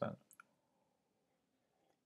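Near silence while a man drinks from a mug: a couple of faint mouth clicks about a third of a second in, then only faint room tone.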